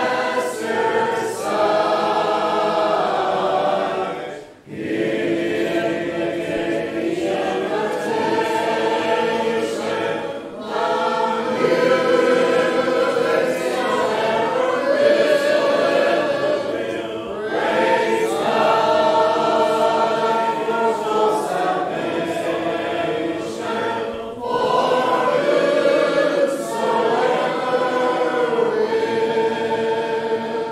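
A congregation of men's and women's voices singing a hymn together without instruments. It goes in long phrases of about six to seven seconds, with a brief breath between them.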